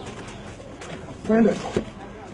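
A rooster clucking and calling while it is grabbed and held, mixed with men's voices. A loud call or shout comes a little past halfway through, with a shorter one just after.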